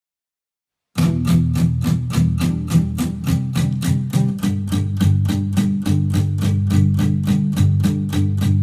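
About a second of silence, then a song starts abruptly on picked guitar: a steady run of about four notes a second over low bass notes.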